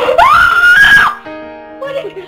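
A girl's high-pitched scream that rises, holds for about a second and then drops away, over steady background music.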